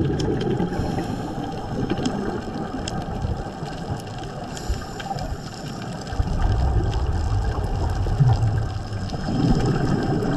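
Underwater sound on a scuba dive: a diver's regulator breathing, with exhaled bubbles burbling. It gets louder from about six seconds in. Faint, scattered clicks sit over it.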